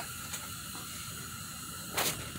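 Faint, steady hiss with a light hum underneath.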